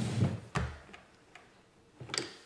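A few light clicks and taps on a tabletop: one sharp click about half a second in and fainter ones a little later, then quiet.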